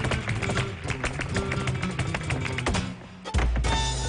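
Flamenco music with a rapid run of sharp percussive strikes from a dancer's zapateado footwork on the stage floor, over held instrumental notes. The music dips briefly about three seconds in, then a deep bass note comes in.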